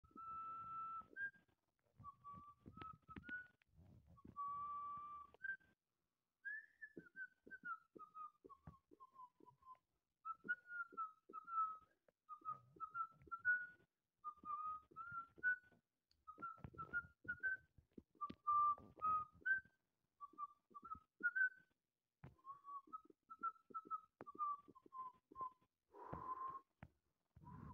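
Whistling of a tune: a single clear tone moving through short phrases of rising and falling notes, with brief pauses between phrases and faint clicks scattered through.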